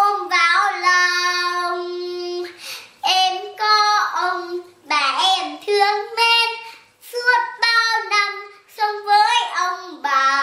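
A young girl singing a Vietnamese children's song unaccompanied, phrase by phrase, with a long held note about a second in.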